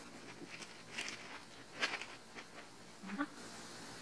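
Scissors snipping open a plastic shipping pouch: a few faint, sharp snips spread out, with light rustling of the packaging.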